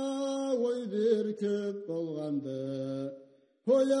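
Slow, chant-like Karachay folk singing in long held notes that bend slightly in pitch, with a lower drone-like part joining about two seconds in. The phrase fades out at about three and a half seconds, and a new one starts on 'Ay' just before the end.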